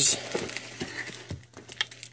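Soft handling noise of plastic coin packaging: light rustling and a few small taps and clicks as items are moved about.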